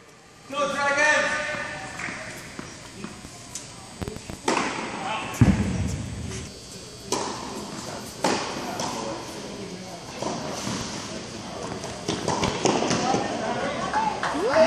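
Tennis balls struck by rackets and bouncing on an indoor hard court, a string of sharp hits ringing in the large hall, with a heavier thud about five seconds in. Voices call out between shots.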